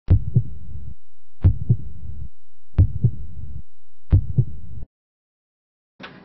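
Heartbeat, four lub-dub double beats a little over a second apart over a faint low hum, stopping just before the five-second mark.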